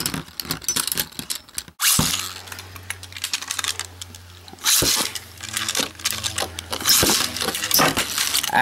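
Metal-wheeled Beyblade spinning tops clicking and clattering against each other and the clear plastic stadium, with a steady low hum of spinning for a couple of seconds. There is a sharp knock about five seconds in.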